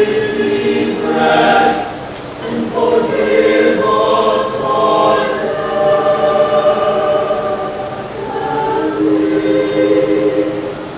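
Mixed choir of men and women singing a sung prayer in harmony, on held notes, with a brief pause between phrases about two seconds in.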